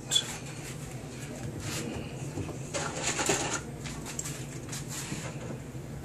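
Kitchen handling noises: a short sharp clink as a metal spoon is set down just after the start, then soft scrapes and rustles of small glass bowls being moved around three seconds in, over a low steady hum.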